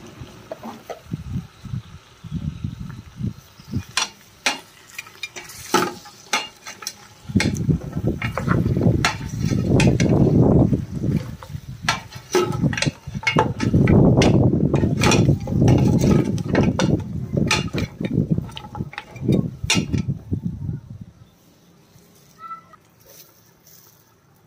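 A steel ladle stirs and turns goat trotters in an aluminium pressure cooker, mixing in the ground spices, with many irregular clinks and scrapes of metal against the pot and bones. The stirring stops about 21 seconds in.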